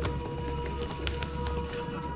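A sustained high shimmering sound that starts suddenly, with a few short clicks through it, over a steady electronic hum.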